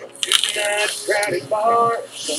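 Box-mod vape coil crackling and hissing as a long drag is drawn through it. Background music with singing plays over it.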